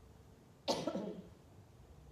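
A single cough about two-thirds of a second in, sudden and short, close to the microphone.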